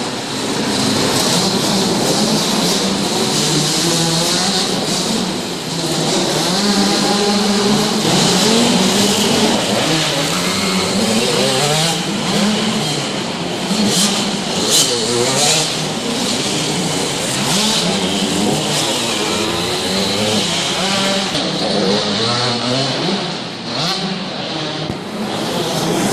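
Several small motocross bikes, among them a KTM 65 SX two-stroke, revving around an indoor dirt track. Engine pitch rises and falls over and over as the riders open and close the throttle, with several engines overlapping in the hall.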